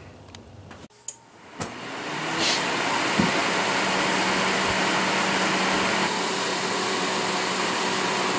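NewAir G73 electric shop heater's fan starting up: after a click about a second in, the rush of air rises over about a second and settles into a steady blowing with a low hum. It is moving a lot of air.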